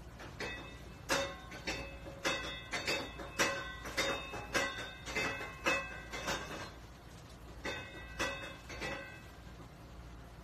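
Metal kitchenware being struck over and over in ringing clinks, about three a second. The clinks pause about seven seconds in, then a few more follow.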